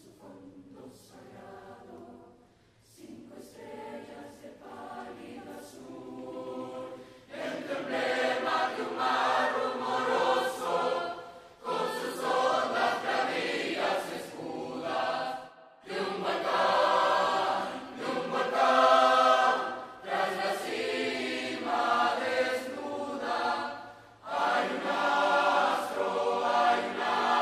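A large mixed choir singing, beginning softly and swelling to a full, loud sound about seven seconds in, with brief breaths between phrases.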